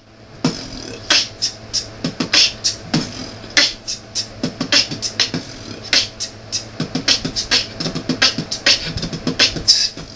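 A person beatboxing: a fast, steady run of sharp mouth-made drum sounds, about three or four strokes a second, starting about half a second in.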